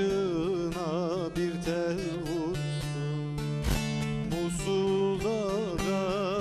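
A man singing a Turkish folk song (türkü) with a wide, wavering vibrato, accompanying himself on a long-necked bağlama. The plucked strings keep a steady low drone under the voice, with sharp strokes now and then.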